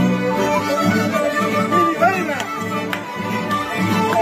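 A live string band playing a tune: violins carry the melody over a mandolin and strummed guitars.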